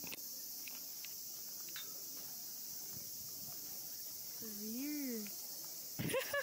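A steady, high-pitched chorus of summer cicadas in the trees. About five seconds in, a person's voice gives one short note that rises and falls.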